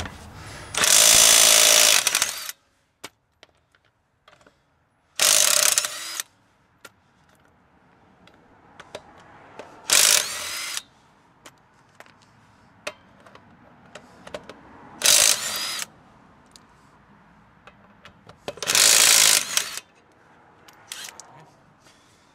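Craftsman impact gun spinning lug nuts off a car wheel: five bursts of about a second each, a few seconds apart, the first the longest. Small clicks come between the bursts.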